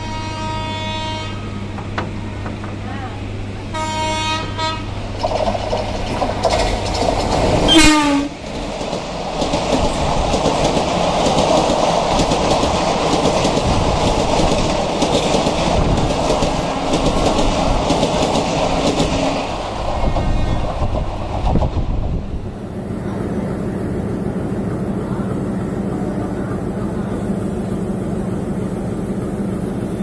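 A WAP-4 electric locomotive hauling an express sounds its air horn as it approaches on the next track: two blasts, then a louder one about 8 s in that falls in pitch as it passes close by. Its coaches then rumble past for about twelve seconds. After a cut about 22 s in, a diesel locomotive idles with a steady drone.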